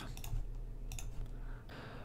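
A few faint computer mouse clicks over a steady low hum, mostly in the first second.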